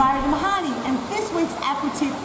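A woman talking over a steady, even rushing noise in the background.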